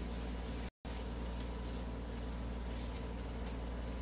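Steady low background hum of room noise. It drops out to dead silence for an instant just under a second in.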